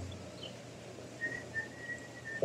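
Faint outdoor ambience with a bird's steady whistled note, lasting about a second from a little past halfway, and a couple of short chirps near the start.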